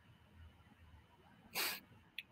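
Near silence, broken about one and a half seconds in by one short, breathy burst of noise, a person's sharp breath or sniff close to a microphone.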